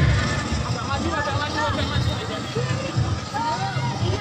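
A group of women's voices singing and chanting a yel-yel team cheer over music, with crowd chatter around them.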